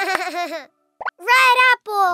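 Cartoon baby's voice giggling in a quick run of short bursts, then, after a short pause, a loud, high, wavering vocal sound, and a falling one near the end.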